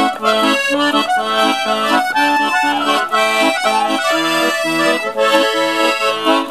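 Piano accordion playing a folk tune: a melody over a steady, even beat of chords.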